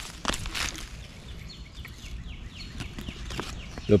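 Corn husks crackling and rustling as an ear of sweet corn is handled and its husk pulled back by hand, with a couple of sharp crackles in the first second. Faint, repeated falling chirps sound in the background through the middle.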